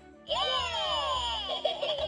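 Hey Duggee Smart Tablet toy playing an electronic sound effect through its small speaker. The sound slides down in pitch, starts about a quarter of a second in, and breaks into short choppy notes near the end.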